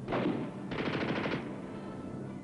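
Small-arms gunfire: a single sharp shot with a short echoing tail, then, just under a second in, a rapid automatic burst lasting well under a second.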